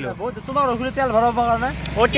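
A man talking, with a low steady rumble of road traffic underneath.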